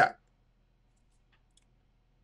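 A man's last word ends right at the start, then near silence with a faint low hum and a few very faint clicks.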